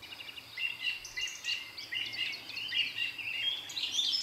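Songbirds chirping and singing in a quick run of short, high notes that begin about half a second in.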